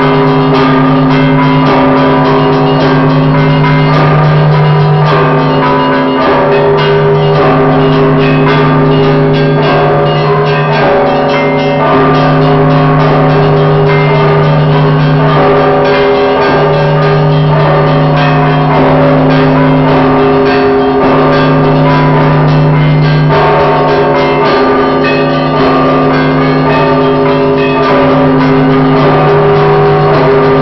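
Russian bell ringing in the traditional style: small bells struck in a fast, continuous clangour over the sustained hum of large bells, which are struck again every second or few. The clappers are pulled by ropes against fixed bells.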